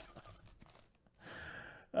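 Faint handling of a foil trading-card pack as its cards are slid out: a few small clicks, then a soft hiss for most of the last second.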